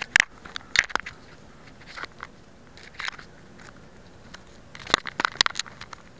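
Irregular crackles, clicks and rustles close to the microphone. The sharpest snaps come just after the start and in a cluster about five seconds in.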